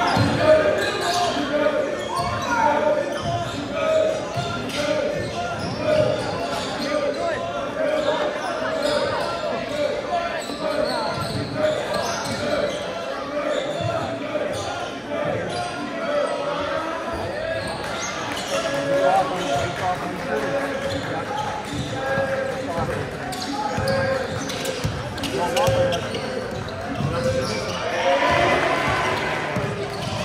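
Basketball dribbling and bouncing on a hardwood gym floor during play, over continuous chatter and calls from players and spectators, echoing in a large gym.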